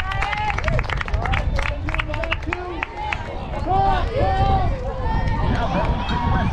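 Voices of players and spectators calling out and chattering around a baseball field, not close to the microphone, over a steady low rumble, with a few sharp clicks in the first two seconds.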